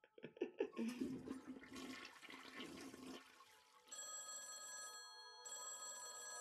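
Cartoon soundtrack from a YouTube Poop, played quietly. A rushing, watery noise runs for about three seconds. Then, from about four seconds in, a telephone rings in steady tones broken by short pauses.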